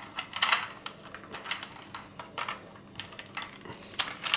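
Hard plastic clicks and rattles from a Kenner M.A.S.K. Switchblade toy helicopter being handled and its moving parts worked, an irregular string of clicks several times a second.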